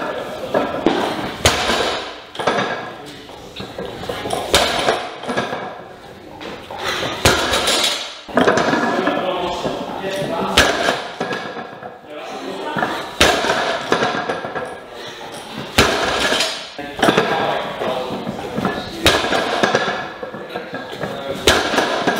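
A 220 kg barbell loaded with bumper plates being pulled and set back down on the lifting platform in quick speed-deadlift reps. Each rep ends in a sharp clank and thud, about every two to three seconds.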